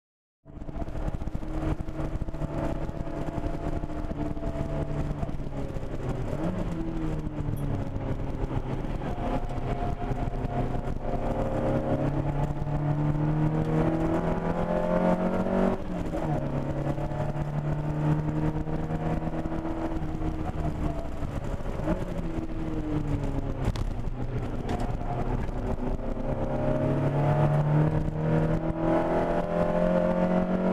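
1978 Ford Capri's modified 2.0-litre Pinto four-cylinder engine driven hard, heard from inside the cabin, beginning a moment in after a brief silence. The revs climb and drop several times as the driver works through the gears.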